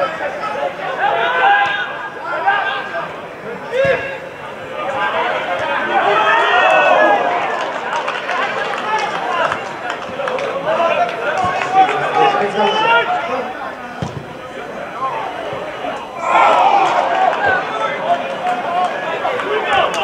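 Indistinct men's voices calling and shouting on a football pitch during play.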